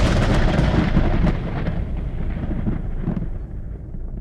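Thunderstorm sound effect: a long rolling thunder rumble with a hiss of rain, fading away steadily.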